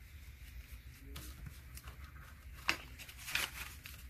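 Soft rustling of paper banknotes being handled and folded by hand, with a few light crisp snaps of the paper, the sharpest a little past halfway.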